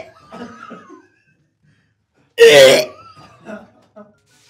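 A man gives one loud, gagging cough about two and a half seconds in, with softer throat and breath noises before and after it. He is gagging at a bite of a foul-tasting donut.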